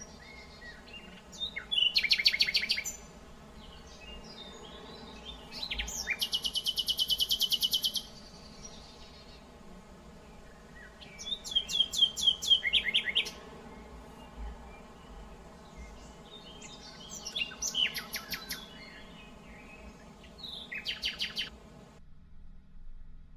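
Songbirds singing in woodland: short phrases of quick falling high notes about two seconds in, again around twelve seconds and twice near the end, and a fast, even, high trill from about six to eight seconds. A faint steady low hum lies underneath.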